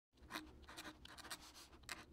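Fountain pen nib writing on paper: faint, irregular scratchy strokes, several a second.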